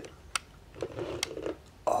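Two light, sharp clicks of small metal lock parts being handled while reloading a pin-tumbler lock plug, the first about a third of a second in and the second a little past a second.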